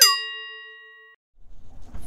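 A single bell-like ding sound effect, sounded at the end of a falling swoop, rings out with several tones and fades over about a second.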